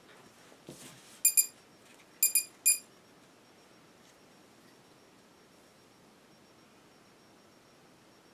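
Walkera Runner 250 quadcopter powering up as its flight battery is plugged in: a small click, then a run of five short, high, same-pitched electronic beeps (two, two, then one) in under two seconds.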